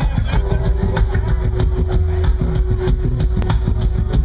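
Live dub reggae band playing loud through a club PA, heavy in the bass, with a single held note coming in just after the start.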